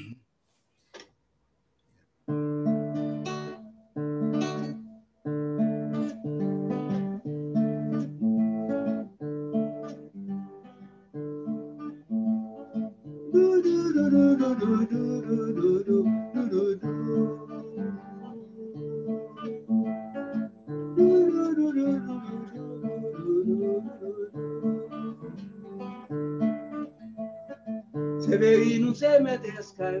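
Acoustic guitar strummed in chords with a steady rhythm, starting about two seconds in. From about halfway, a man's voice sings along with it.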